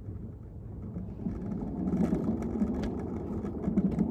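Rumbling and rustling handling noise from the recording phone being picked up and turned, with a run of small clicks and knocks; it swells about a second in.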